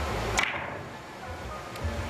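A cue tip striking the cue ball in three-cushion billiards: one sharp click about half a second in, with a couple of faint ball clicks near the end over a low hum.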